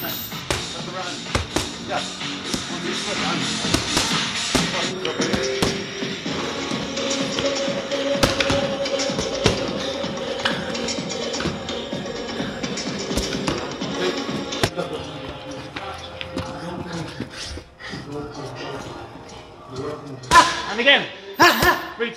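Background music over repeated gloved punches smacking leather focus mitts in quick strikes, with a voice coming in near the end.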